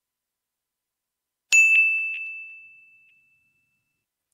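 A single bright ding, like a small bell or chime, about a second and a half in, ringing out and fading over about two seconds.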